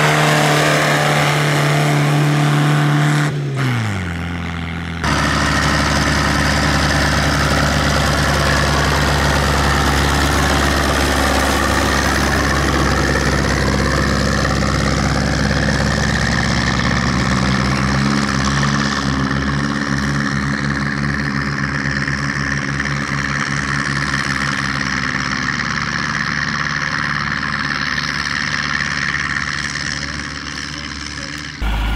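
Two tractor engines, one after the other. First the engine of a homemade blue tractor runs steadily, its pitch sliding down about three seconds in. Then, after a cut, a red Zetor tractor's diesel engine chugs as it drives across a field, speeding up slightly about halfway through.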